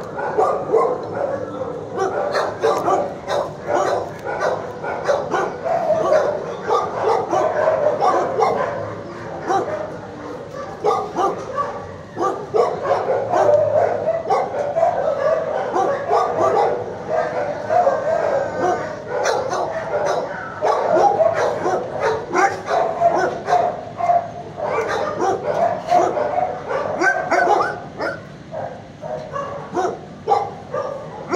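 Many dogs in a shelter kennel barking and yipping at once, a dense, unbroken din of overlapping barks.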